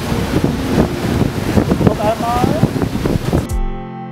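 Wind buffeting the microphone, with the voices of people nearby in the background. About three and a half seconds in this cuts off and background music with steady held tones begins.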